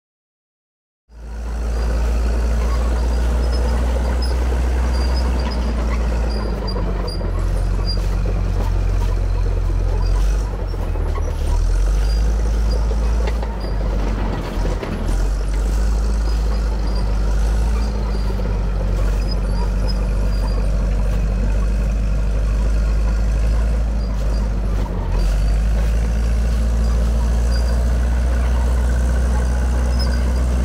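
After about a second of silence, a Fiat-Allis 8D crawler bulldozer's diesel engine starts sounding, running steadily and loudly as the dozer drives along on its tracks.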